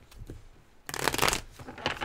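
A deck of tarot cards being shuffled by hand: a burst of rapid card flutter about a second in, then a shorter one near the end.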